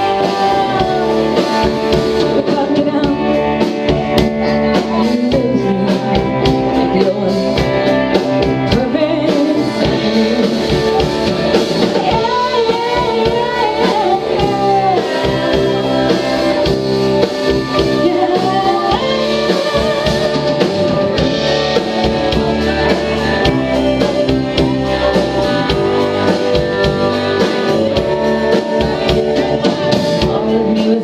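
Live rock band playing: a woman singing over electric guitars, electric bass and a drum kit.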